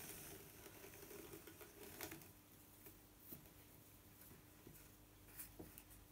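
Faint, soft rustling of yarn and a few light ticks as hands unpick a row of weft from the warp of a lap loom.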